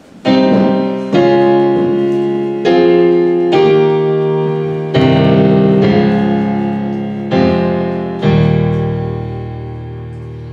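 Yamaha digital piano playing a slow run of held chords, about eight in all, each struck and left to ring and fade, with a deeper bass note in the last chords.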